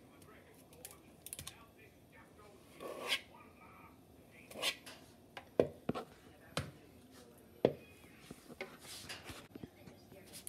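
Small metal cookie scoop scraping dough out of a plastic mixing bowl, with a handful of sharp clicks and knocks from the scoop's squeeze-handle release and from metal tapping the bowl.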